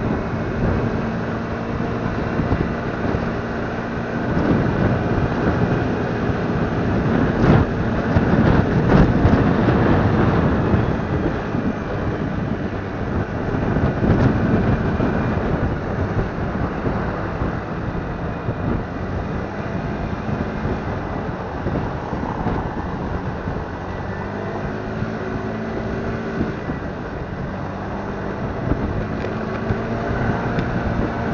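Motor scooter riding along a town street: the engine hums at a steady pitch under road noise and wind on the microphone, with surrounding traffic, growing louder for a couple of seconds about eight seconds in.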